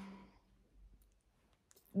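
A woman's voice trailing off at the end of a word, then a short pause holding a few faint, brief clicks before she starts speaking again.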